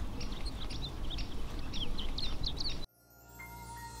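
Small birds chirping in quick short calls over outdoor background noise, cut off abruptly about three seconds in. A faint, soft electronic tone of the logo music then fades in.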